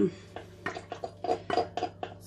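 Glass jug clinking and knocking against a stainless-steel mixing bowl as soft butter is tipped and scraped out of it. A quick run of short, sharp knocks, several a second, some with a brief ring.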